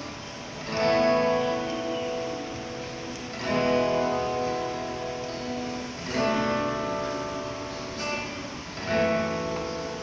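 Worship band playing an instrumental passage led by guitars: a new chord is struck about every three seconds and left to ring out before the next.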